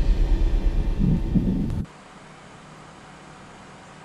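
Dark, low rumbling soundtrack cuts off abruptly a little under two seconds in, leaving only a faint steady hiss of outdoor ambience.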